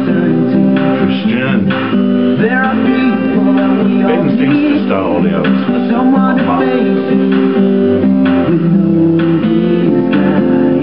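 Boy-band pop song playing back, with strummed acoustic guitar under male vocals.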